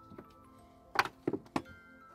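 Three sharp knocks about a second in, the first the loudest, as the hard cargo floor panel of a Mercedes GL550's trunk is unlatched and lifted. Background music plays under them.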